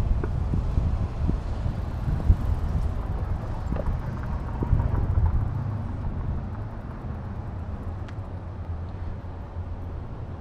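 Rumbling wind noise on the microphone mixed with city street traffic, easing off about six seconds in.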